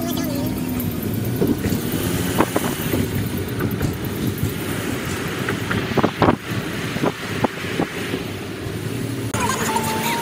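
Steady road noise inside a moving car's cabin in traffic, with a few short sharp knocks.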